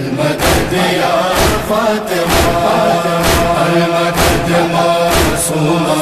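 Noha interlude: voices chanting a sustained, droning refrain over a steady beat of matam-style chest-beating thuds, roughly one a second.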